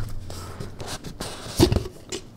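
A cardboard tube box being handled as its lid is worked off: faint rubbing and scraping, then one short, louder sound about a second and a half in.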